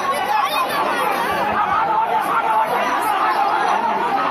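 A crowd of many overlapping voices chattering and calling out at once, a steady loud babble.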